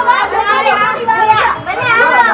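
Several children talking and calling out over one another, with background music underneath.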